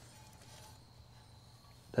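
Quiet pause with faint, steady background hiss and no distinct sound event.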